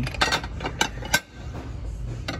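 Gibson ceramic dinner plates clinking against each other as one is lifted from a stack on a shelf: a few sharp clinks, the sharpest a little over a second in.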